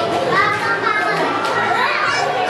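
Small children calling out and playing amid overlapping chatter from a crowd of adults, with a few high, rising children's calls.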